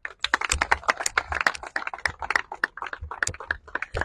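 A small group of people applauding, many quick hand claps overlapping irregularly.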